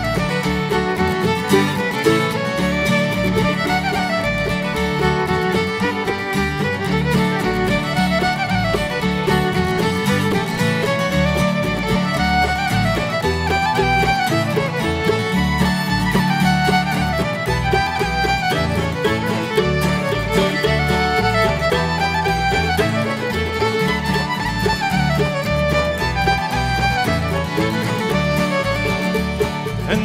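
Live acoustic string band playing an instrumental break: a fiddle carries the lead on a lively reel over guitar and banjo accompaniment, at a steady, unbroken level.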